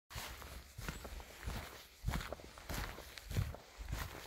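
Footsteps crunching on a gravel path, a person walking in rubber boots at a steady pace, about three steps every two seconds.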